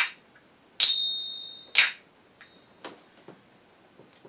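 A pair of small finger cymbals (zills) struck together: a short, damped clack at the start, then an open strike about a second in that rings on a high, steady tone for about a second, then another short clack. After that comes a fainter ring and a few light metallic clicks as the cymbals are handled.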